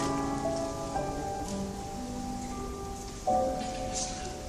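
Piano playing a slow passage of held notes, with a louder chord struck about three seconds in.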